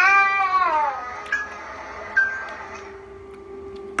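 A small child crying in a crib: one loud wail that falls in pitch over about a second, then fainter sounds.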